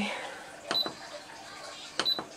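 Fitnord exercise machine console beeping once, a short high beep with a click, as a button is pressed to step through the workout programs.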